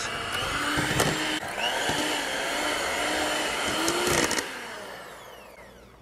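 Black+Decker electric hand mixer running, its beaters churning a thick cake-mix, egg and melted-butter batter in an enamel bowl, with a few clacks of the beaters against the bowl. A little over four seconds in it is switched off and the motor's whine winds down, falling in pitch and fading.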